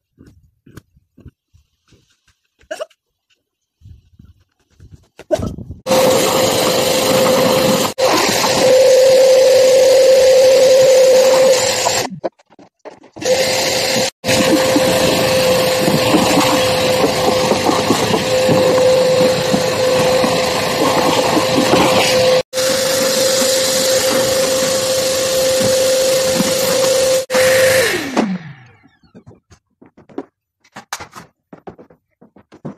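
Electric vacuum cleaner running with a steady motor whine, starting about six seconds in and dropping out briefly a couple of times. Near the end it is switched off and the motor's pitch falls as it winds down.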